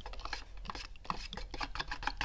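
Wooden paint stir stick scraping and ticking against the walls of a plastic mixing cup as silver metal flake is stirred into clear coat: a quick, irregular run of small scrapes and knocks.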